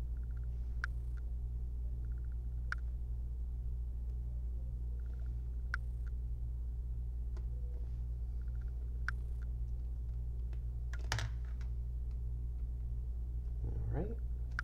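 Small precision screwdriver driving a tiny screw into a laptop screen's mounting bracket: scattered light clicks and short runs of fine rapid ticking as the screw turns, with a sharper click about eleven seconds in. A steady low hum runs underneath.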